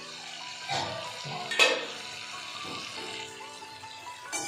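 Tomato, green chilli and garlic sizzling in hot oil in an aluminium kadai as its lid is lifted off, with a sharp metal clank about one and a half seconds in.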